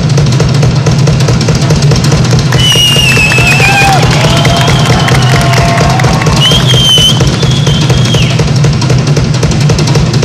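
A drum kit played live in a fast, dense rhythm, with bass drum, snare and cymbals. A high wavering melodic tone sounds over the drums from about three to eight seconds in.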